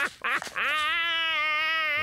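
A woman's voice: a few short bursts of laughter, then one long, nasal held note lasting over a second.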